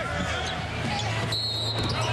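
Live basketball game sound in an arena: a steady crowd murmur with sneakers squeaking on the hardwood court as play goes on.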